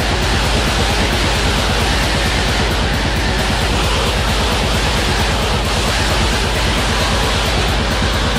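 Black metal recording: dense distorted guitars over very fast, relentless drumming, at a steady full loudness.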